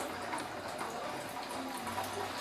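Faint wet sounds of fresh cheese curd in cheesecloth being squeezed and handled, with whey trickling and dripping off it in small scattered drops.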